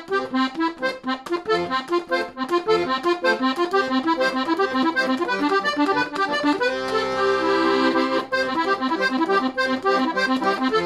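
Hohner Verdi II piano accordion playing an arpeggiated accompaniment pattern in triplets, a steady run of short repeated notes. Near the middle a chord is held for about a second and a half before the broken-chord pattern resumes.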